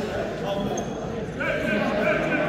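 Indistinct voices of spectators and coaches talking and calling out in a gymnasium.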